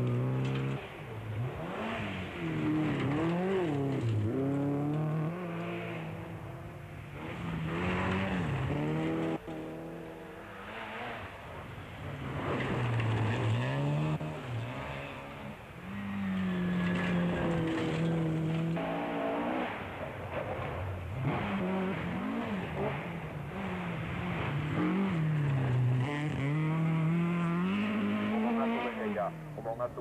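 Rally car engines revving hard on a gravel stage. The pitch climbs and drops again and again as the drivers shift gears, and it swells and fades as each car passes.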